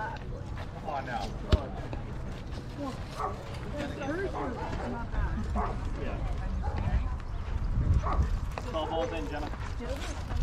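Indistinct voices of players and spectators at a softball field, with one sharp crack about a second and a half in. Low wind rumble on the microphone rises through the second half.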